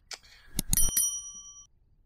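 Subscribe-button animation sound effect: a few clicks, then a bell ding that rings out for most of a second.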